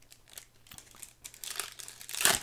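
Foil Pokémon booster pack wrapper crinkling as it is handled and opened, in a run of light crackles that grow busier near the end.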